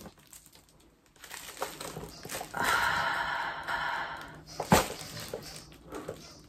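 Plastic bubble wrap crinkling and rustling as a packed cosmetics item is unwrapped, densest through the middle, with one sharp click a little before the end.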